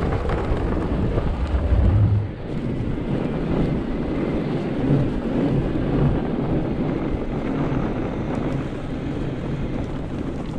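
Wind buffeting the microphone over the rumble of an e-bike's studded fat tyres rolling over snow. A heavier low rumble in the first two seconds, while crossing a snow-covered wooden bridge, drops off suddenly a little past two seconds in.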